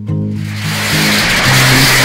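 Background song with a rising hiss that swells up over it and cuts off suddenly at the end.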